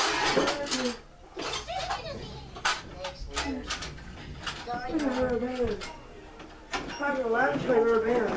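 Boys' voices talking indistinctly, with scattered sharp clicks and knocks from objects being handled in a plastic toy box.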